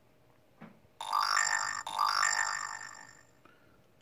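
Moto G6 smartphone's notification chime from its loudspeaker: a bright, multi-note electronic tone that sounds twice in quick succession about a second in, then fades out.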